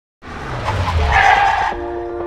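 A car sound effect for a logo intro: a low engine rumble with a tyre screech over it, lasting about a second and a half. Music with steady pitched notes starts near the end.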